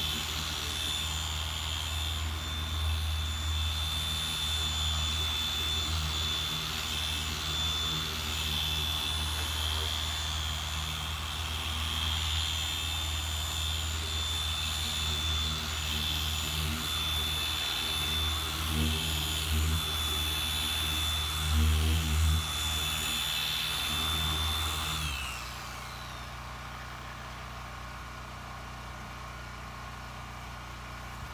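Porter-Cable random orbital polisher running steadily with a high whine while buffing wax into a car's paint. About 25 seconds in it is switched off and its whine falls away as it spins down.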